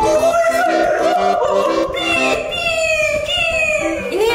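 A man's drawn-out, wavering wail that slides down in pitch in its second half: a mock dog howl, over light background music.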